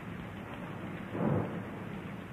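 Rain and thunder sound effect on an old, muffled film soundtrack: a steady hiss of rain, with a louder low rumble of thunder about a second in.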